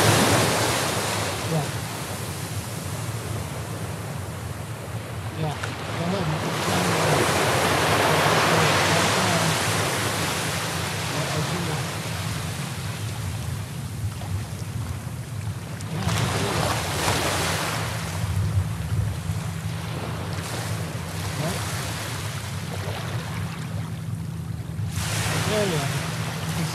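Ocean surf breaking and washing up a sandy beach, swelling loudest about four times as waves come in, with wind buffeting the microphone.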